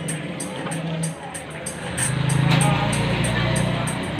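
Background music with a steady beat over street noise; about halfway in a motorcycle engine comes up loudly as it passes.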